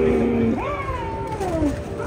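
A drawn-out wailing moan from a zombie performer. It rises in pitch about half a second in and then slides slowly down, over a low steady tone.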